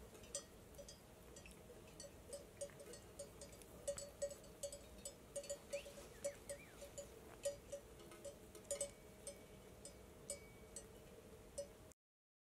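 Faint bells worn by a grazing sheep flock, clinking irregularly, several at a time.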